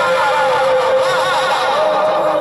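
A man's voice singing a naat, holding one long sustained note through the stage loudspeakers, the pitch stepping up slightly near the end.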